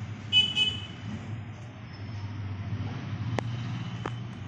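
Steady low background hum with a brief high-pitched beep just after the start and a single sharp click near the end.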